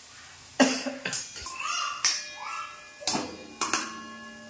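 A steel spoon knocking and scraping against a stainless steel kadhai while stirring frying onions: about half a dozen sharp clanks, with the pan ringing on after them.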